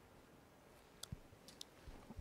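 Near silence with a few faint computer mouse clicks, about a second in and again half a second later.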